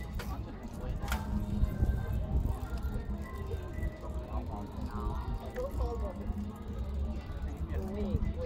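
Indistinct voices of people close by, over a steady low rumble of outdoor background noise.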